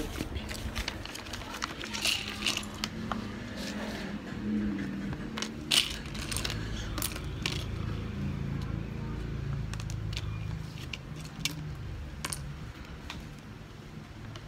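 Small plastic building bricks clicking and clattering as they are picked up, sorted and fitted together by hand, in sharp irregular clicks, the loudest about six seconds in.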